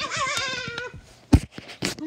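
A child's high-pitched cry of 'Ow!', voicing a plush toy in a play fight, then two sharp thumps about half a second apart, the first the loudest sound here.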